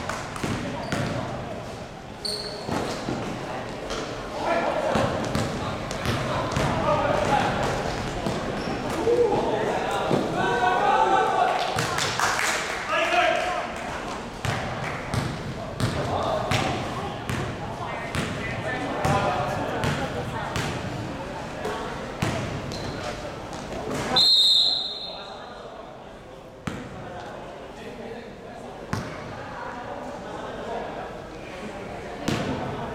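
Basketball bouncing on a hard indoor court under players' voices and calls, ringing in a large gym hall. About 24 seconds in, a referee's whistle blows once, briefly, stopping play.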